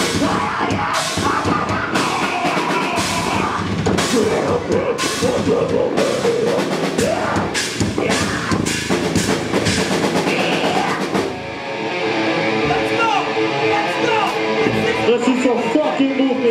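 Live heavy rock band playing loud: distorted guitars and bass over a drum kit with repeated cymbal crashes. About eleven seconds in the cymbal crashes stop and held guitar chords ring on.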